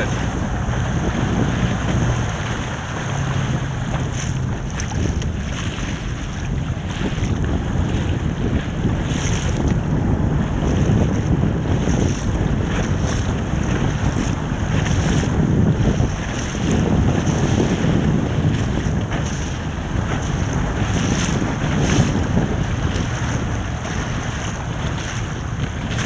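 Steady wind buffeting the microphone, with water splashing and lapping as a boat moves through choppy water.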